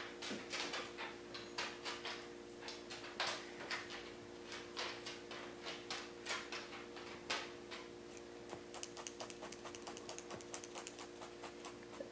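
Light crunching and rustling of wool roving being wrapped and pressed by hand, turning into quick, even pokes of a felting needle into the wool near the end, over a faint steady hum.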